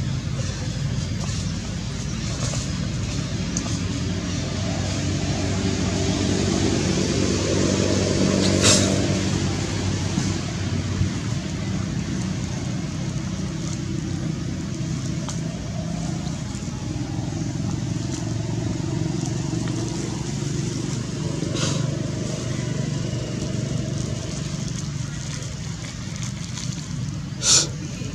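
Steady low drone of a running motor-vehicle engine, growing louder and easing off again around the middle. A sharp click about nine seconds in, and another near the end.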